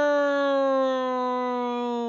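A woman's voice imitating a jet plane: one long, unbroken note that slides slowly and steadily down in pitch, like a siren winding down.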